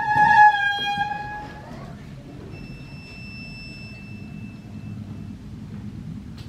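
Erhu and piano duet: the erhu holds a long, bright high note that slips slightly down about a second in, then fades. A faint, very high thin note follows for a couple of seconds over soft low piano notes.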